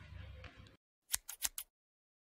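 Faint room tone that cuts off into silence, then four quick, sharp clicks in about half a second.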